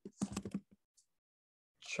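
Several quick computer keyboard keystrokes in the first second of typing, then one more keystroke and a pause.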